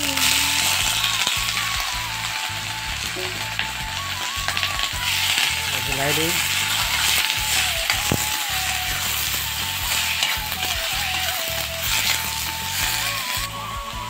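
Snails tipped into hot oil in an iron wok over a wood fire, with vegetables already frying, setting off a loud, steady sizzle that carries on as the pan is stirred.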